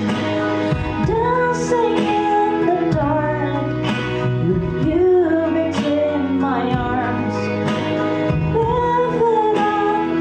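A woman singing a slow ballad into a microphone over instrumental accompaniment, holding long notes with vibrato.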